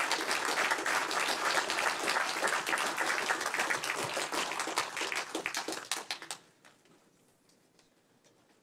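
Audience applauding with a dense patter of many hands clapping, which stops fairly quickly about six seconds in.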